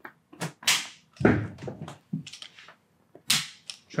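Chiropractic work on the upper back and side of the neck, giving about five short, sharp snaps. The loudest comes about a second in and another shortly before the end.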